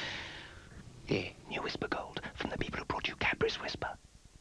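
Whispered speech: a brief breathy hiss, then about three seconds of whispered words.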